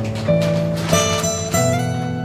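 Background music: a light tune of plucked string notes, a new note picked about every half second.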